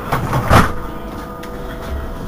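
Irisbus Cristalis ETB18 trolleybus standing at a stop, its electrical equipment giving a steady hum of a few fixed tones. About half a second in there is a short loud burst of rushing noise, lasting about half a second.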